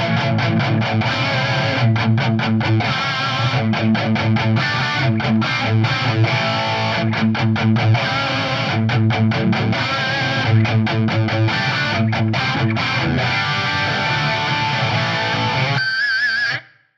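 Distorted electric guitar through the Axe-Fx III's Mark IV amp model and the multi-tap delay block's Aerosol effect, playing a thick rhythmic riff broken by many short stops. The notes waver with a chorus-like shimmer from the effect.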